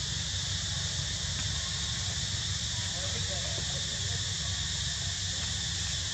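A steady high-pitched hiss over a low rumble, even in level throughout, with a few faint brief sounds about three seconds in.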